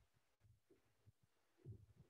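Near silence: room tone, with a faint low thump about three-quarters of the way through.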